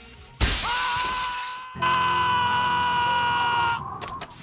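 Cartoon soundtrack excerpt: a sudden shattering crash, like breaking glass, about half a second in, followed by long, steady held high tones, with a second held tone starting about two seconds in.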